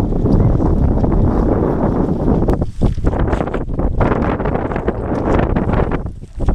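Wind buffeting the microphone, a loud, gusty rumble that dips briefly about three seconds in.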